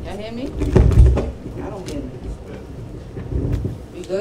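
Indistinct voices of people talking, loudest about a second in, with a few short sharp knocks.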